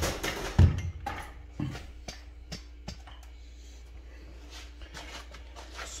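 A few scattered knocks and taps, loudest in the first second and then fainter, over a faint steady hum.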